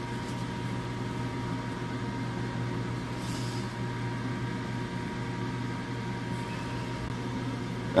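Steady low hum of a small laboratory magnetic stirrer's motor running under a beaker of nitric acid and pyrite, with a thin steady whine above it. A brief faint hiss comes about three seconds in.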